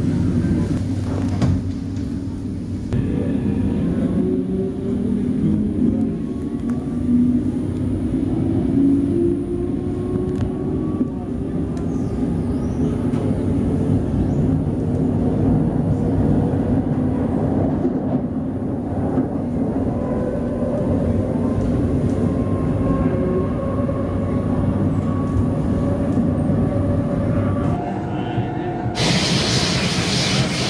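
Singapore MRT train heard from inside the carriage: a steady rumble with a faint electric motor whine that climbs slowly in pitch as the train gathers speed.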